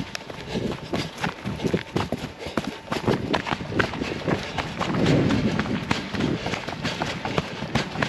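Trail runners' footfalls on grass and loose stones at a running pace, a quick irregular patter of steps, with a louder low swell about five seconds in.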